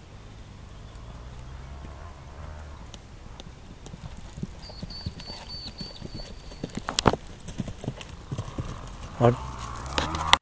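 A pony's hooves cantering over grass, uneven dull beats that grow louder as it passes close by.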